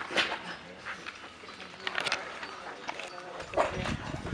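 Raw location sound of parkour on concrete: a few sharp knocks and scuffs of feet and hands landing and pushing off, near the start, about two seconds in and again near the end. A short voice-like call comes in about three and a half seconds in.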